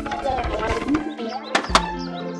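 Cartoon background music with short chirpy character voices, and a sharp double clunk about one and a half seconds in as the tractor's hitch couples to the trailer.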